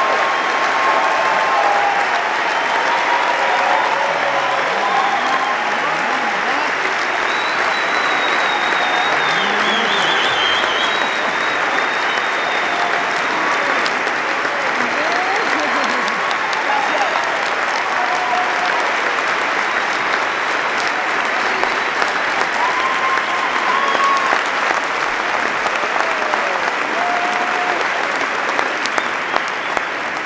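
Theatre audience applauding steadily, with scattered shouts and a whistle among the clapping; the applause thins slightly into separate claps near the end.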